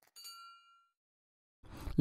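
A single short, bright notification ding, a chime of several clear high tones, struck just after the start and fading out within about three-quarters of a second: the bell sound effect of a subscribe-button animation.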